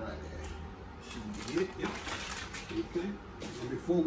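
Gloved hands working in a stainless steel mixing bowl: a run of quick clicks and rustles from about a second in, under a man's low, unclear talk.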